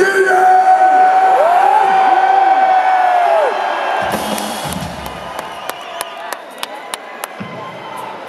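Rock-concert crowd cheering, with long held whoops and shouts that rise and fall. About four seconds in the cheering thins out, a low thump sounds, and a run of sharp clicks follows.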